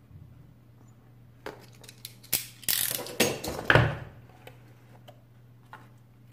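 A cardboard phone box being opened by hand, its seal broken and its lid worked loose. A run of clicks, scrapes and rustles comes from about a second and a half in to about four seconds in, the loudest with a dull thump.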